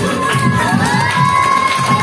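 A group of children cheering and shouting, with one long held whoop, over a recorded folk song's drum beat of about four beats a second that fades near the end.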